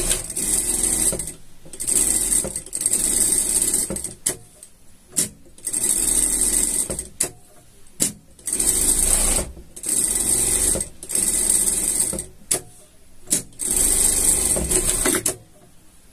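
Industrial straight-stitch sewing machine sewing a seam through three layers: non-woven TNT, acrylic batting and lining. It runs in about eight bursts of one to two seconds, stopping and starting, with a few very short blips in between.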